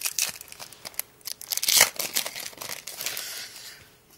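A trading-card booster pack being torn open by hand, its wrapper crinkling and crackling in irregular bursts, loudest a little under two seconds in.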